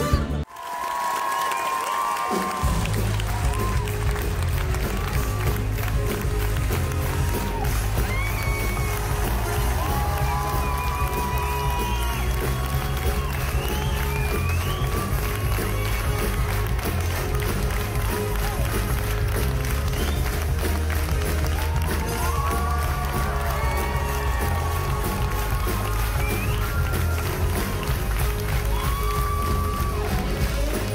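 Live band music with a heavy bass beat under a theatre audience clapping, cheering and whooping for the cast's curtain call. The bass comes in about two seconds in.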